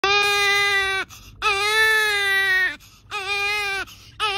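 A baby crying in three long, even wails, each a little over a second, with short pauses for breath between them.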